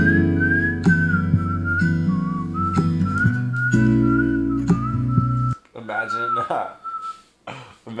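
Recorded song with a whistled melody over strummed acoustic guitar. The guitar drops out about five and a half seconds in and the whistle carries on alone for a moment before stopping near the end.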